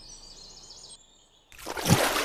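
Faint high-pitched bird chirps over outdoor background noise, broken off by a brief dead silence about halfway. Louder outdoor noise then rises into a sudden burst near the end.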